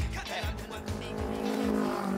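Background music with a beat, and a motorcycle engine running as it passes along the road.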